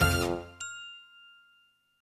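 The final chord of the closing music dies away, then a single bright chime of a production company logo strikes about half a second in and rings out, fading away.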